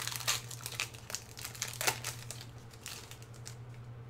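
Crinkling and tearing of a Magic: The Gathering booster pack's foil wrapper as it is opened: a run of crackles that thins out near the end. A steady low hum runs underneath.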